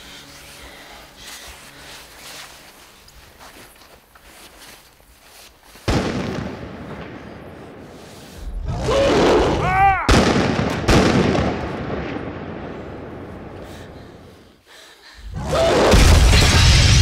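Film sound effects: a sudden loud bang about six seconds in, then a swelling roar carrying a wavering, pitched cry and a sharp crack. An explosion builds near the end.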